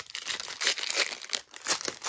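Foil wrapper of an Upper Deck hockey card pack crinkling and tearing as it is peeled open by hand. The crackles come thick and irregular, with a brief pause about one and a half seconds in.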